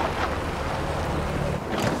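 Renault Kangoo van pulling onto the roadside shoulder and stopping, with wind noise; its low running sound fades about a second and a half in, then a brief sweep of noise comes near the end.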